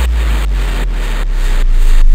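Outro of a hardstyle track: a deep sustained bass under a noise layer pulsing about four times a second, with no melody or kick.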